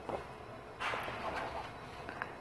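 A faint rustle of cut fabric pieces being lifted and shifted by hand on a cutting mat, loudest about a second in.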